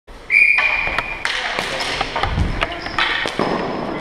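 Floor hockey play in a gymnasium: plastic sticks clacking against each other and hitting the ball in a rapid run of sharp knocks, with sneakers squeaking on the floor and the hall's echo.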